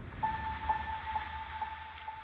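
A steady high electronic tone with faint pulses about twice a second, over a low rumble: a tense drone in the background score.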